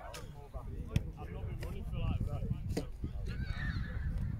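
Shouting and calling from rugby players and touchline spectators across an open pitch, with strained, rising shouts near the end and a sharp knock about a second in.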